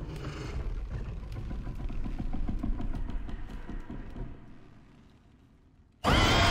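Film-trailer sound design: a low rumble with dense, fast clicking over it. It fades steadily from about four seconds in to near silence by the end.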